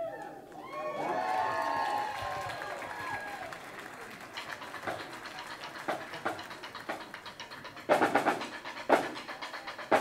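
Guests cheering and whooping in a break in a marching drumline's playing, followed by sparse sharp drum strikes that grow louder near the end as the drumline starts up again.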